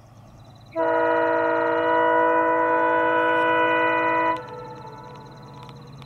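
EMD WDP-4B diesel locomotive's air horn sounding one long blast of several tones at once, lasting about three and a half seconds and starting just under a second in.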